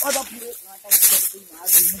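Brush and dry leaves rustling and crackling as people push and step through dense undergrowth, with short hissy bursts of rustle at the start and again near the end, under low, broken talking.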